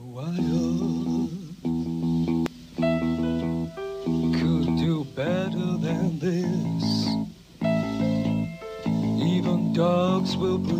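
Live band playing a slow song: bass, piano and strings holding chords that change about once a second, with a male voice singing over them with a wavering vibrato.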